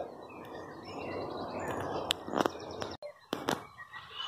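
Outdoor ambience: a low rustling noise for about the first three seconds, a few sharp clicks, and faint bird chirps.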